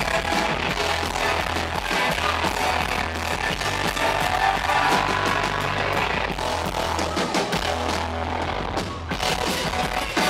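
A live rock band playing, recorded from the audience, with long held bass notes under dense guitars and drums.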